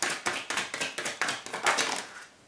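Tarot deck being shuffled by hand: a quick, even run of card slaps, about six a second, stopping at the end.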